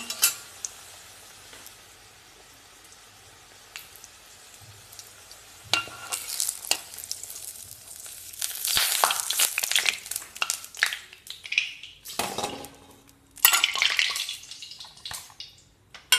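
Oil sizzling in a kadai as a poori deep-fries, faint at first and much louder from about six seconds in. A metal spoon scrapes and clinks against the pan, with further clinks of steel dishes in the last few seconds.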